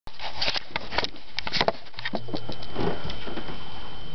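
Handling noise from a camera being set in place: a quick run of clicks and knocks over the first two seconds. After that comes softer rustling as a person settles back on a bed, with a faint high steady whine underneath.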